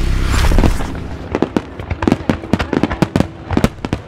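Fireworks going off: a loud low rumble that fades within the first second, then a quick irregular run of sharp cracks and pops, several a second.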